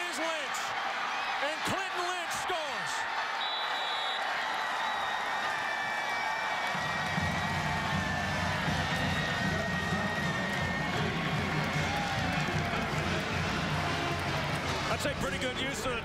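Stadium crowd noise with scattered shouts during a touchdown play. About seven seconds in, a marching band strikes up with heavy low brass and drums.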